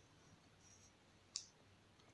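Near silence, with one short, sharp click a little over a second in.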